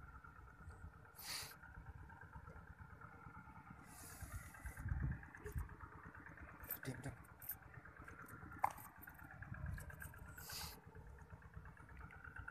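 Faint, steady drone of a distant engine, its pitch drifting slightly in the middle, with a few brief rustles and bumps of wind and handling noise on the microphone.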